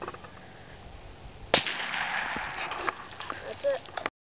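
A single sharp .22 rifle shot about a second and a half in, followed by about a second of noisy spatter as the bullet strikes the puddle and throws up water.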